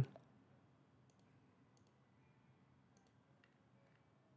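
Faint computer mouse button clicks: three clicks roughly a second apart over quiet room tone.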